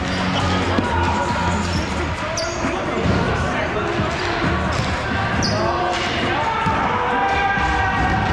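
Volleyball bouncing and being struck on an indoor sport court, with players' voices echoing in the large hall.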